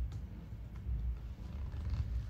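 A low, uneven rumble of background noise, with a few faint clicks from computer keys.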